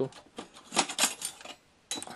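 Sharp clicks and light metal-and-plastic clatter as an Epson Stylus SX130 printer's control board on its sheet-metal bracket is worked loose from the chassis, several in quick succession with a louder click near the end.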